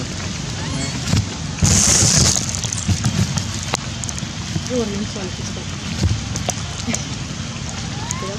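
Outdoor ambience: a steady hiss with faint, broken voices. About two seconds in comes a brief, louder rush of hiss.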